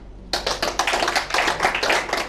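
Audience applauding: many hands clapping together, breaking out about a third of a second in after a brief pause and carrying on steadily.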